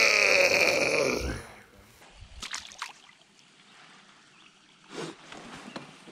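A man laughing loudly for about the first second and a half, then a few faint, brief splashes and knocks.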